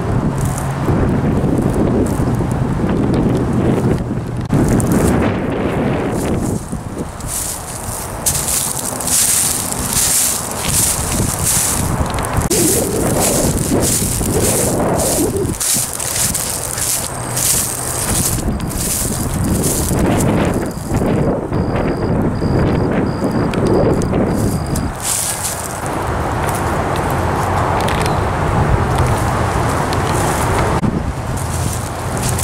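Wind buffeting a handheld camera's microphone, with crunching footsteps through dry grass and brush, busiest just before the middle. A faint high-pitched beep repeats several times past the middle.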